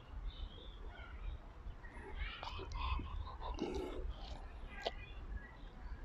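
Quiet outdoor ambience: scattered distant bird chirps over a low steady rumble, with a few soft clicks and rustles in the middle.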